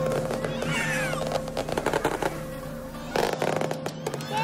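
New Year's fireworks crackling and banging while a crowd cheers, over music; one loud bang about three seconds in.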